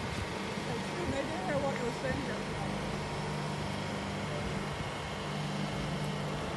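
Steady low mechanical hum of a refrigerated trailer's cooling unit running, with faint voices in the background about a second in.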